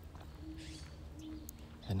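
Faint owl hoots: two short, low, steady hoots about two-thirds of a second apart, from two owls calling, one hooting and one cooing.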